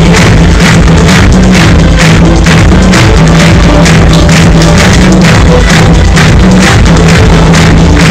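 Live electronic dance-pop played loud through a concert PA, with a steady pounding beat and a heavy bass line.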